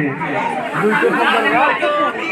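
Speech only: people talking, with overlapping chatter.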